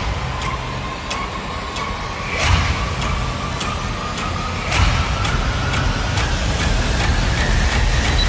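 Film-trailer sound design under a title card: a low rumbling drone and a held tone that slowly rises in pitch, cut by sharp ticks about every 0.7 seconds. Whooshing swells come about two and a half and five seconds in, and the whole thing grows gradually louder.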